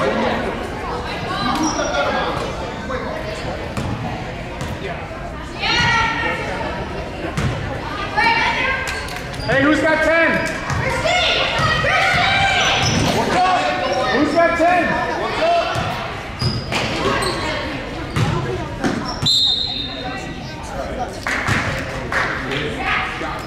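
A basketball being dribbled and bouncing on a gym floor, with shouting voices of players and spectators echoing through the gymnasium. A short, shrill whistle sounds near the end.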